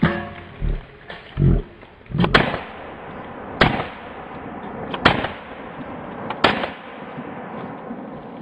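Beretta CX4 Storm 9mm carbine fired in a slow string of single shots, about one every second and a half, each a sharp crack. Two duller low thumps come in the first two seconds.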